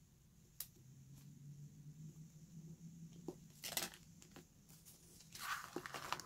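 Paper sticker sheets being handled and stickers peeled from their backing: a small click, then two short crackly rustles, the second near the end, over a faint low hum.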